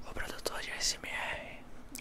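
A man whispering in Portuguese, breathy and unvoiced, with a sharp hissing 's' about a second in.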